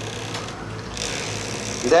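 A steady low hum under faint room noise, with a voice starting at the very end.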